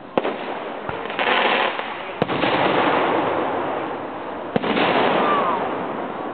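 Aerial firework shells bursting: three sharp bangs about two seconds apart, with a fainter one early on, each followed by a longer wash of noise that fades away.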